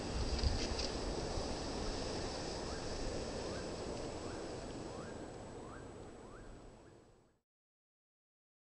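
Outdoor wind noise with a bump of camera handling about half a second in. From about three seconds in, a bird gives a run of short rising chirps, about one every 0.7 s, while the sound fades out near the end.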